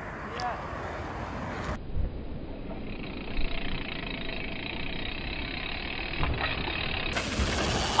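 Wind rushing on an outdoor camera microphone mixed with mountain bike tyres rolling over dirt, a steady noisy rush. Its tone changes abruptly about two seconds in and again near the end, where the footage cuts between shots.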